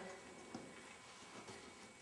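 Near silence with a few faint ticks and rustles of hands working a rubber bicycle inner tube into the tire, one tick a little louder about half a second in.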